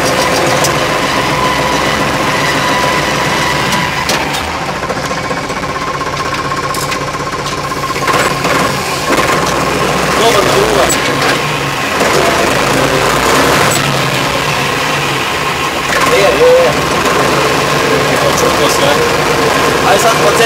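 Torpedo TD55A Adriatic tractor's diesel engine running steadily, heard from the driver's seat while the tractor drives.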